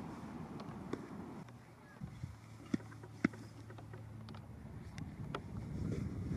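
Gusty wind rumbling on the microphone, with a faint steady low hum in the middle and two sharp ticks about half a second apart.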